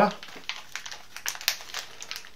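Light, scattered clicks and rustling of small frame parts being handled, with the brass spacer pins and plastic boom holders clicking together.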